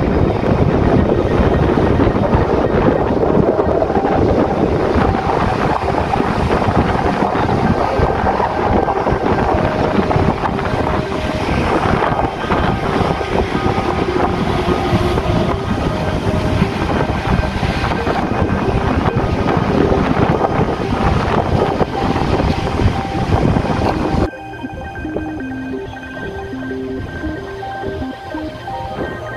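Wind buffeting the microphone, with the sea on a beach, under background music. About 24 seconds in, the wind and surf noise cuts off abruptly and only the music carries on, more quietly.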